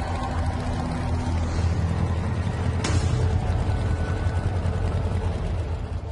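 Motorcycle engine running with a steady low drone, a little louder in the middle, and a single sharp click a little under three seconds in.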